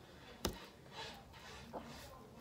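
A single sharp click about half a second in, followed by a faint soft rustle around a second in and a small tick near the end, over quiet room sound.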